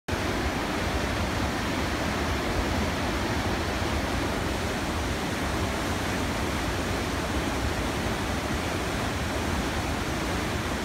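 Whitewater river rapid rushing steadily: an even, unbroken noise of churning water.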